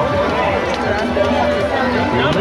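Crowd babble: many people talking at once around a temple procession, with no single voice standing out.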